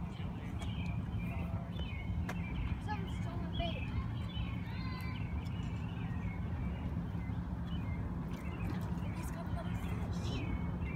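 Steady low background rumble with a faint constant hum, and faint distant voices.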